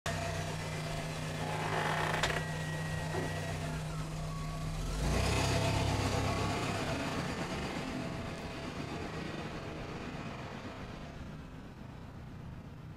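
A car engine running with a low, steady hum. About five seconds in, a car drives past with a rush of noise that slowly fades away.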